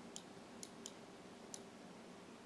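Computer mouse clicking four times, faint and sharp, while working a PTZ camera's on-screen pan and zoom controls, over a quiet room with a faint steady hum.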